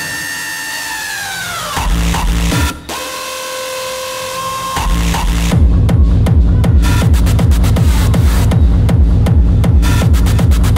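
Electronic club music from a DJ mix: a breakdown with falling pitch sweeps and held tones, then a fast, heavy bass beat comes back in about five and a half seconds in.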